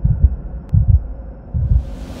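Three deep bass thumps, a little under a second apart, over a faint hum: the sound design of an animated channel logo intro.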